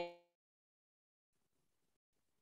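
Near silence: a spoken word trails off right at the start, then nothing is heard.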